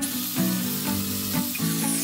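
Chainsaw chain cutting through a tree branch, a steady hissing cutting noise that stops near the end as the piece comes free, over background music.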